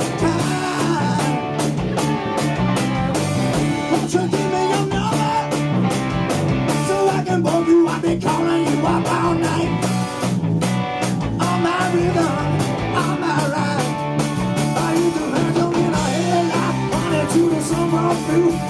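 Rock band playing live: electric guitars over bass and a steady drumbeat, heard from within the audience.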